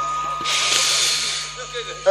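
A Quran reciter's deep breath in, drawn close to the microphones through a PA: a loud hiss that starts about half a second in and lasts about a second, as he fills his lungs before the next long chanted phrase.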